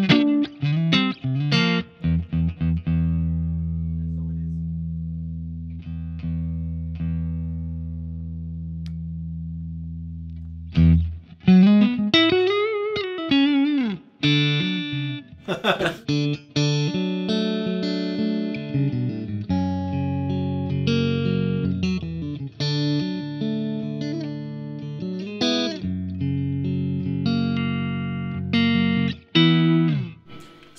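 Stratocaster-style electric guitar played through a Marshall JTM45 valve amp. A few quick chords are followed by one chord left to ring for about nine seconds. Then comes a bent, wavering note and a run of single-note licks and chords.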